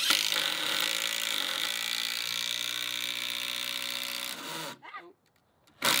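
Cordless drill driving a screw into a timber planter box. The motor runs steadily for about four and a half seconds, stops, and starts again with a short burst near the end.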